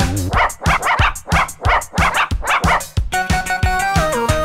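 Rapid run of about eight short, rhythmic cartoon puppy barks over an upbeat theme tune's beat. The melody comes back in after about three seconds.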